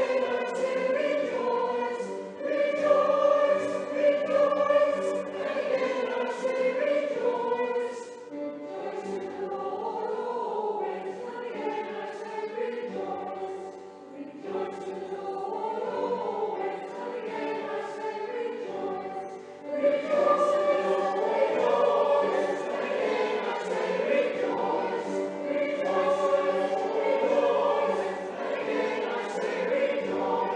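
Amateur scratch choir singing a song in a church, softer through the middle and fuller again about two-thirds of the way through.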